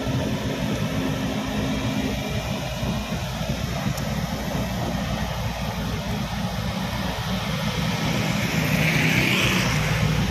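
Volvo crawler excavator's diesel engine running steadily under work, with a brief hiss rising over it near the end.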